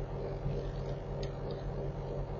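Steady low electrical hum with a light hiss, with a few faint ticks about half a second in and again around a second and a quarter in.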